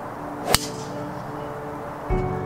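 Golf driver striking a ball off the tee: a single sharp crack about half a second in.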